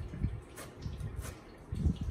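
Cleaver slicing red chillies on a plastic cutting board: about four separate knife strokes tapping through onto the board, the loudest near the end.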